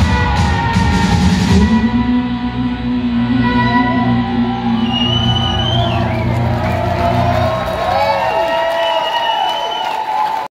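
Live rock band ending a song. The drums stop about two seconds in, then a held final chord rings on under gliding, bending notes, and the bass drops out near the end.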